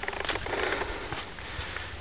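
A person breathing hard while walking on a dirt path, with faint irregular breath and step noises over a steady low rumble.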